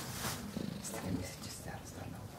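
Indistinct, low person's voice with no clear words.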